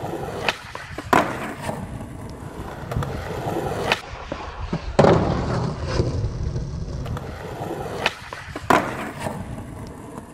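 Skateboard wheels rolling over rough asphalt and concrete, broken by several sharp clacks of the board striking the ground. These are tail pops and landings, the loudest about a second in, halfway through and near the end.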